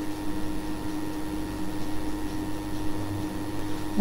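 Steady low hum and faint hiss of background noise, with no other events.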